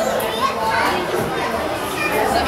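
Crowd chatter: several adults and children talking at once, no single voice standing out.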